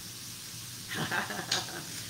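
Onions and apples sizzling steadily as they sauté in a frying pan, the apples starting to brown. About a second in, a woman's voice and laughter come in over it.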